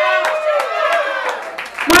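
Audience clapping for a band member just introduced, with a voice calling out over it and a loud thump near the end.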